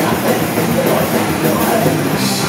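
Live thrash metal band playing loud: heavily distorted electric guitar and bass riffing over drums, with the cymbals dropping out through this passage and coming back in just after.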